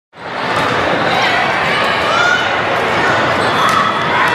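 Echoing din of a busy volleyball gym: many overlapping voices of players and spectators, with a few sharp ball hits near the end.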